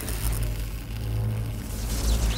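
Sound design for an animated title sequence: a deep, steady rumble under music.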